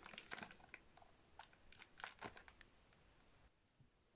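A perfume box being torn open: faint, scattered crinkling and tearing of its packaging over the first two seconds or so, then near quiet.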